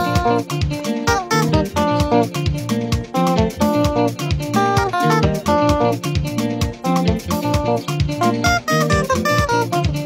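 Fender Stratocaster electric guitar playing a melodic lead line in a praise instrumental, over a steady backing beat with bass.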